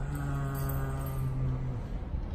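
A low male voice chanting, holding one steady note for nearly two seconds before it stops.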